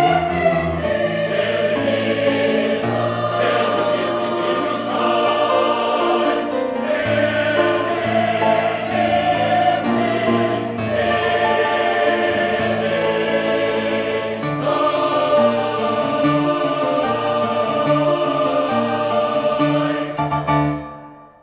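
Large mixed choir of men and women singing a sacred song in German, in full sustained chords that change in blocks, loud throughout.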